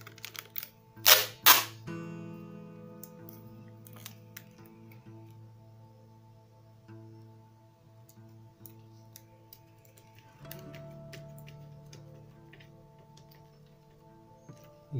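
Two short, loud rips of clear packing tape being pulled off the roll about a second in, followed by scattered soft clicks and rustles of the tape and paper being handled, over steady background music.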